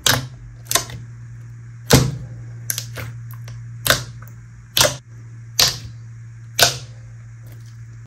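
Thick slime being squeezed and pressed by hand in a glass dish, giving sharp pops and clicks roughly once a second, about ten in all, over a steady low hum. The pops are the usual slime sound of trapped air bursting as the slime is squeezed.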